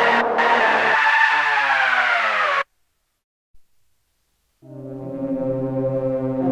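Novation Summit synthesizer: a sustained chord whose pitch glides steadily downward, its low notes dropping out about a second in, until it cuts off abruptly. After about two seconds of silence, a new low, sustained synth chord swells in.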